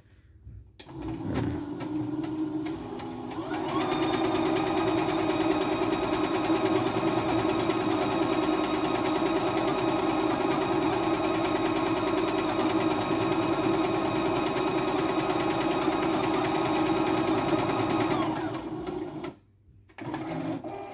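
CNY E960 computerised sewing/embroidery machine sewing a decorative stitch: its motor and needle start about a second in, pick up speed over the next few seconds, run steadily, then slow and stop near the end when the pattern is finished.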